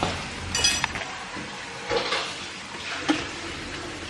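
Kitchenware being handled: one bright ringing clink about half a second in, then a few soft knocks.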